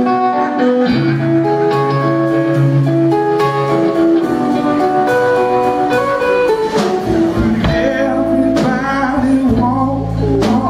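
Live blues-rock band playing a song's instrumental opening: a hollow-body electric guitar picks out a riff, and about a second in the bass guitar and drum kit come in with a steady beat.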